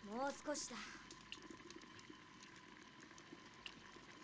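A short line of voiced dialogue from the anime's soundtrack in the first second, then a faint, quiet background with scattered small ticks.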